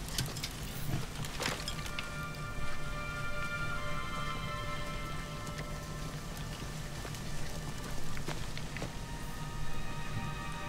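War drama soundtrack: held musical notes come in about two seconds in, over a bed of noise with scattered clicks and knocks.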